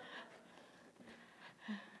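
Near silence: room tone, with a faint, short voice sound near the end.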